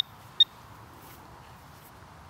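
A single short, high-pitched electronic beep from a metal detector about half a second in, then only a faint, steady outdoor background.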